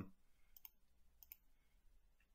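Near silence with a few faint computer mouse clicks in two pairs, as polyline vertices are picked on screen.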